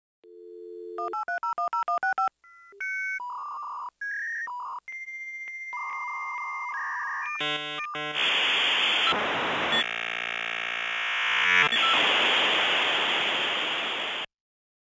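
Dial-up modem connecting: a dial tone, then a quick run of about nine touch-tone digits, then held answer tones. From about eight seconds in comes the loud hissing handshake noise with stepped tones, which cuts off at the end.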